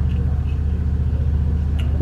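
A steady low hum with evenly spaced overtones, and a light click near the end.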